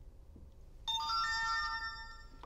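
Qolsys IQ Panel 2 Plus alert chime: a few electronic notes come in one after another about a second in and ring on together for about a second and a half. The chime signals that the panel, in auto-learn mode, has picked up a sensor's transmission and is asking to enroll it.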